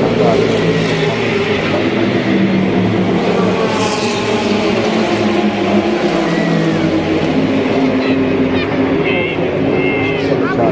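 Race car engines running on the circuit, several steady engine notes holding and shifting in pitch as cars pass, with spectators' voices mixed in.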